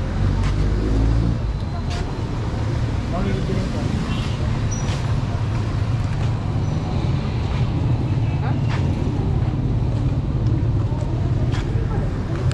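Street traffic: a motor vehicle engine running steadily close by, a low continuous hum, with indistinct voices of passers-by and a few small clicks and knocks.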